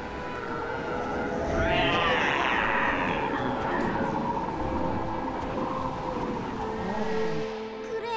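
Soundtrack music over cartoon dinosaur sound effects from a Pinacosaurus herd, with a rising animal cry about two seconds in.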